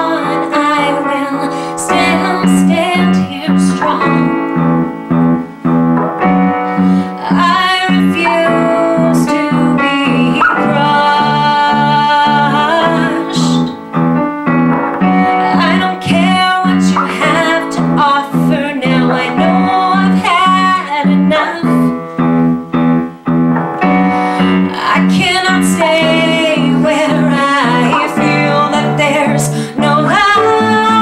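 Live band music: a woman singing over an electric keyboard playing piano sounds and an electric bass guitar.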